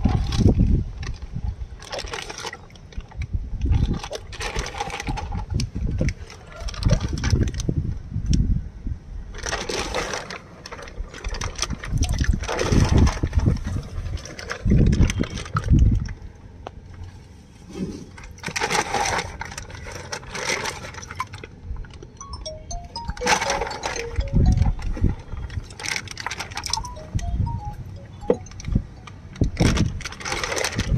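Water sloshing and splashing in irregular bursts as a plastic bag of fish is tipped and emptied into a tub of water.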